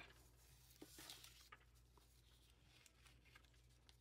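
Near silence, with a few faint ticks and rustles of paper as a sticker is pressed onto a planner page by hand.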